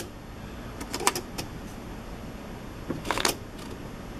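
Smith Corona SD 300 electronic typewriter clicking: single sharp clicks a few times in the first second and a half, then a short cluster of clicks about three seconds in.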